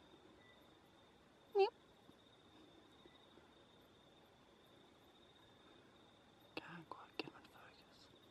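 A single short call that drops in pitch, about one and a half seconds in. Near the end come a few seconds of soft whispering and clicks, over a faint steady high tone.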